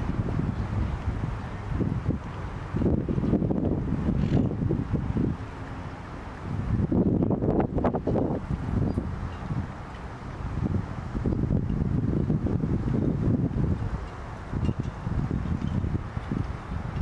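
Wind buffeting the microphone, a low noise that swells and fades in gusts every few seconds.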